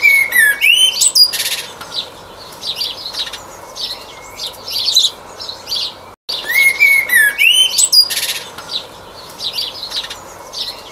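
Common blackbird singing: a low, fluty whistled phrase followed by higher, scratchy twittering. After a brief break about six seconds in, the same phrase starts over.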